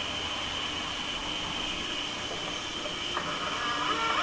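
Stepper motor of a rotating LED-strip mechanical television starting to turn the drum. It gives a steady high whine, joined by a lower hum about two and a half seconds in, and the sound grows louder near the end as the motor starts to speed up.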